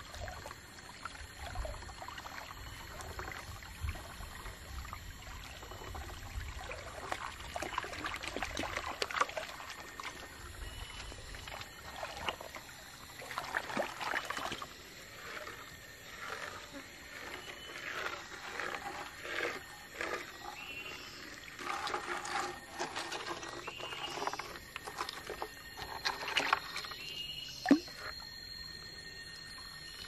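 Water sloshing and splashing in a wooden gold pan as it is swirled and dipped in shallow stream water, washing off the gravel to leave the heavy concentrate; the splashes come irregularly and grow busier in the second half.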